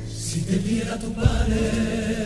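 Male choir of a Cádiz carnival comparsa singing long held notes together, with a short low thump a little over a second in.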